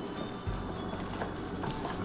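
A spoon stirring and scraping sticky bread dough in a glass bowl: soft squelching scrapes, with a couple of light clicks of the spoon against the glass.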